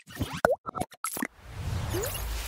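Animated logo intro sound effects: a quick run of pops and clicks with a short rising blip about half a second in, then a swelling whoosh through the second half.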